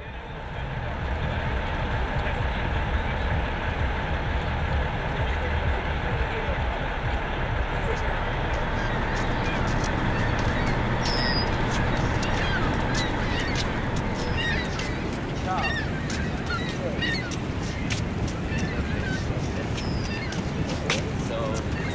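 Steady roar of Niagara Falls, with birds calling over it from about eight seconds in.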